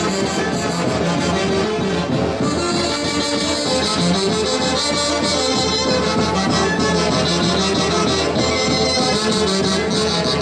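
Andean folk dance music (huayno style) from a band led by wind instruments, playing continuously with a steady beat.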